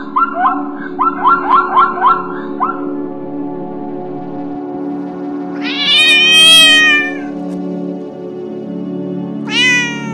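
A domestic cat meowing: one long meow about six seconds in, rising then falling in pitch, and a shorter meow near the end, over steady background music. Near the start there is a quick run of about eight short falling chirps.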